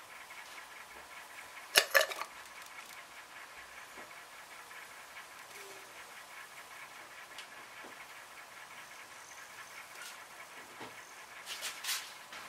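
Faint steady hiss with two sharp clicks close together about two seconds in, then a few much fainter ticks.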